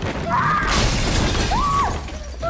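Glass shattering as it is smashed over a man's head: a sudden crash with a spray of breaking glass less than a second in. Short pitched cries from a person come before and after it, over a low drone.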